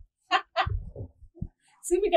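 A woman's brief wordless vocal sounds, two short pitched bursts about a third of a second in, followed by low rumbling and a short low knock.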